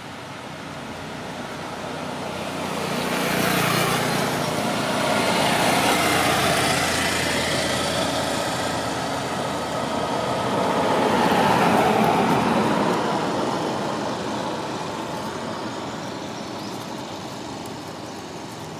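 Road traffic passing: a broad rushing noise that swells up a couple of seconds in, peaks twice, and fades away again near the end.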